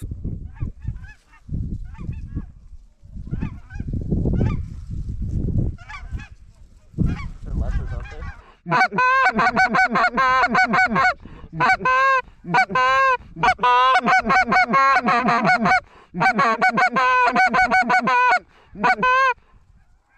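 Loud goose honks in quick runs, starting about nine seconds in and going on with short breaks, after several seconds of wind buffeting the microphone.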